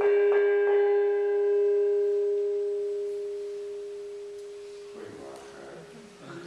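A small hanging gong struck several times in quick succession, then left to ring. Its one low tone, with higher overtones, fades slowly over about four seconds. A rustle of movement starts near the end.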